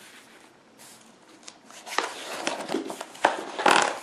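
Paper pages of a ring-bound service manual being handled and turned, rustling, with a few sharp ticks and a louder swish of a page near the end.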